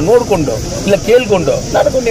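A man speaking loudly into press microphones, over a steady high hiss.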